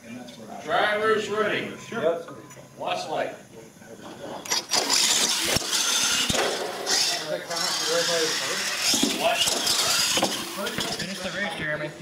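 Voices for the first few seconds, then, about four and a half seconds in, a loud, sustained rushing noise from radio-controlled monster trucks racing across a hall floor, with voices over it.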